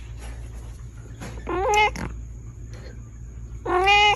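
Domestic cat meowing twice, two short meows about two seconds apart, over a steady low hum.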